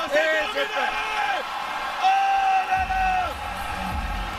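A man speaking: French-language ringside boxing commentary, with a low rumble coming in near the end.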